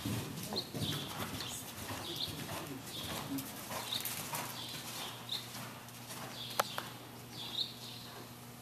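A horse cantering on soft indoor-arena dirt: muffled hoofbeats, with a short sound repeating about once per stride, roughly every 0.7 s. There is a sharp click a little past halfway.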